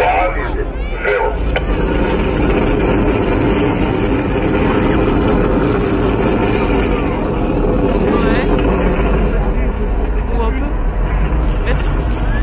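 Outdoor crowd of many people talking at once, a steady murmur of overlapping voices over a constant low rumble.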